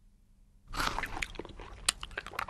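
Crunchy chewing and munching of a biscuit and sliced banana, starting just under a second in after a near-silent pause, full of small sharp crackles and clicks.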